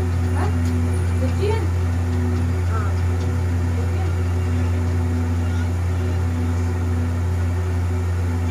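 A steady, loud low hum, with faint voices talking in the background.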